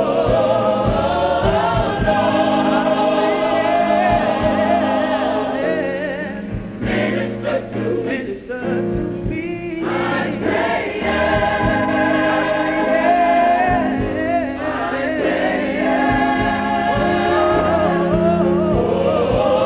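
A mixed gospel choir sings full, sustained chords in a live concert performance. About seven to ten seconds in, the sound thins and breaks up briefly, then the full choir returns.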